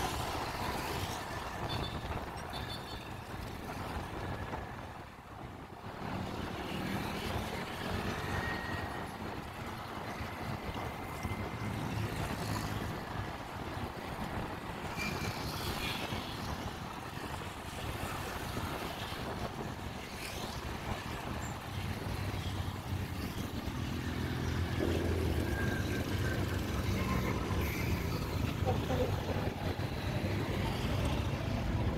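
Riding a motorcycle through town traffic: steady wind noise on the microphone over the engine and the surrounding vehicles. Low engine sound grows louder near the end.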